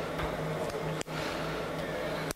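Steady low hum and hiss of room tone, cutting out briefly about a second in.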